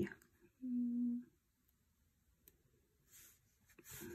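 A woman's short closed-mouth hum, one steady note lasting under a second, followed by near quiet with a faint tick and a brief soft scrape.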